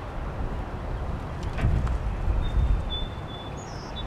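Outdoor street ambience: a low rumble of wind on the microphone, swelling in the middle, with a small bird giving a thin, steady high whistle in the second half and a short higher chirp near the end.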